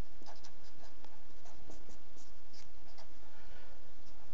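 Felt-tip marker writing on paper: a series of short, faint pen strokes over a steady low background hum.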